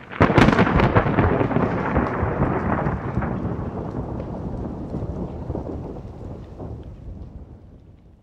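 A thunderclap: a sudden loud crack just after the start, then a long rumble that slowly fades away.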